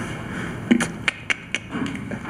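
Handling noise at a podium microphone: a handful of short, sharp clicks and taps in the second half, as the speaker fiddles with something in his hands, over a low room hiss.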